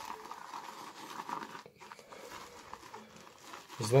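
Shaving brush whisked briskly around a ceramic lather bowl, working a few drops of water into a too-thick shaving-soap lather: a steady, wet crackly swishing, briefly broken about halfway.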